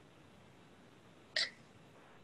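Quiet room tone over a video call, with one brief vocal sound from a participant about a second and a half in.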